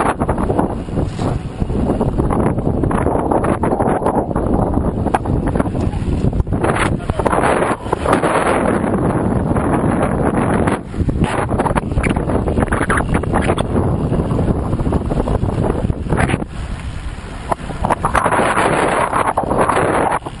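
Wind buffeting the microphone of a helmet-mounted GoPro Hero HD camera while riding a road bike at speed, a loud steady rush that eases briefly about eleven seconds in and again a few seconds before the end.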